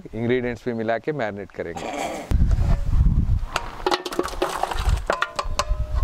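A man's voice briefly, then a low rumble with scattered sharp clinks and clicks, fitting metal cookware and steel platters being handled.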